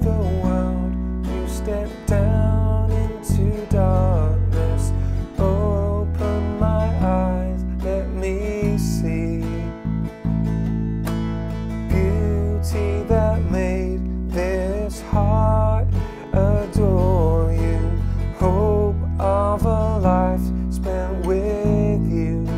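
Bass guitar playing sustained root notes of a worship-song verse in E (E, B, F-sharp minor), the bass note changing every second or two, over a backing track of strummed acoustic guitar and a melody line.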